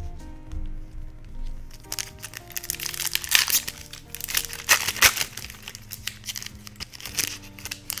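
Foil Pokémon booster pack wrapper crinkling loudly as it is handled and torn open, mostly through the middle few seconds. Soft background music plays throughout.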